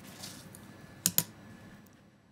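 Two quick, sharp clicks close together about a second in, over faint background hiss.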